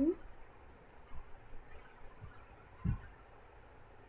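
Light clicks and taps of a stylus on a writing tablet as a word is handwritten, with a couple of soft low knocks.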